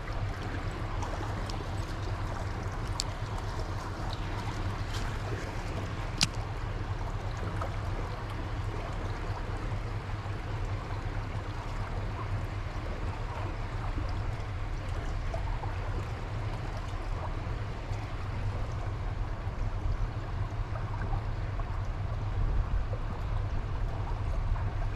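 Steady rush of running stream water, with a few sharp clicks, the clearest about six seconds in.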